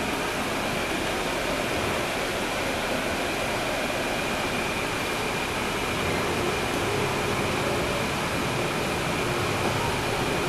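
Cabin noise of a 2012 NABI 40-SFW transit bus heard from a seat near the rear, over the Cummins ISL9 diesel engine: a steady drone with a thin high whine. A deeper engine hum comes up a little after about six seconds.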